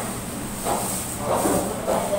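Restaurant room noise: a steady hiss with faint, indistinct voices of other diners.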